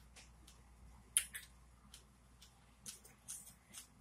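Close-miked mouth sounds of someone chewing strawberry: a series of faint, sharp wet clicks and lip smacks, the loudest about a second in.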